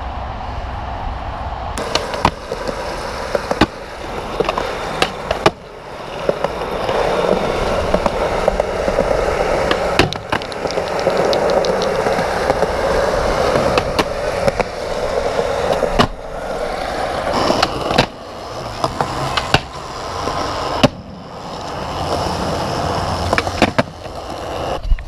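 Skateboard wheels rolling on smooth skatepark concrete, broken about ten times by sharp clacks of the board striking the ground.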